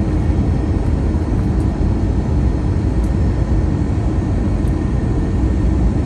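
Steady low rumble and rush of engine and airflow noise inside the cabin of an Airbus A321-231 on approach, with its IAE V2500 turbofans running and a faint steady whine over the roar.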